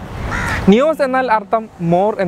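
A man talking in Malayalam. A short rough, noisy sound comes in the first half-second, just before his voice.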